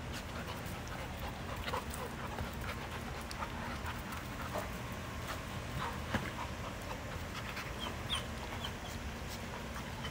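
A bulldog puppy and a black Labrador playing rough together: dog panting and scuffling, with many short, sharp little sounds scattered throughout, the sharpest about six seconds in.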